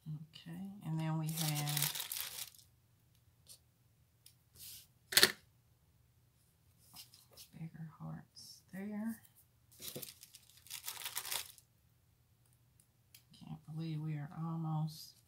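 Sticker backing and paper being peeled and handled, with two longer tearing rustles and a sharp click about five seconds in. A woman's voice murmurs wordlessly three times between them.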